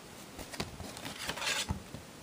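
Handling noise of a CD case being opened and the disc taken out: a cluster of small clicks and rustles, a louder sliding rustle near the end, and a soft thump.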